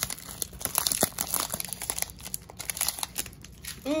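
Foil booster-pack wrapper of Pokémon trading cards crinkling and crackling as it is torn open by hand: a dense run of sharp crackles, loudest in the first second and a half, then thinning out.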